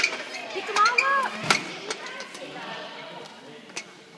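Sharp clacks of hollow plastic Easter eggs knocking into a bucket and on a hard floor, the loudest about one and a half seconds in. Background chatter and a short high-pitched voice run alongside.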